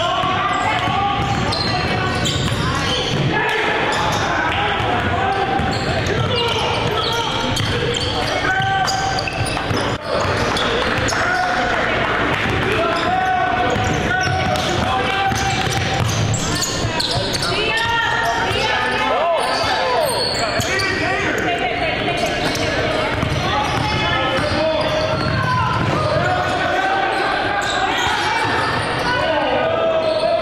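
Live basketball game sound echoing in a gymnasium: a ball dribbled on the hardwood floor, sneakers squeaking, and indistinct voices of players and onlookers calling out.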